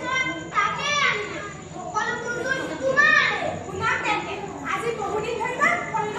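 A young girl's high voice delivering dialogue in a stage play, with wide swoops up and down in pitch.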